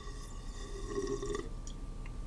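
A person taking a sip of coffee, a soft slurp lasting about a second and a half.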